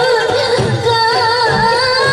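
Bhawaiya folk song: a sung melody over flute and dotara accompaniment, continuous and steady in loudness.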